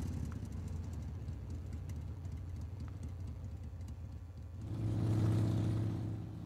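Cruiser motorcycle engine running with a low, steady sound that gets louder and fuller about five seconds in as the bike accelerates.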